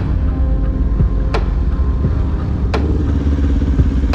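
Kawasaki Ninja 400's parallel-twin engine idling at a standstill, under background music with a sharp hit about every second and a half.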